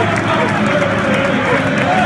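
Crowd of away football fans singing and shouting together in the stand, many voices at once with no break.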